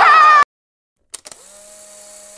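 Loud crowd voices with one held shout, cut off abruptly about half a second in. After a brief silence, a few clicks lead into a faint steady hum with a hiss.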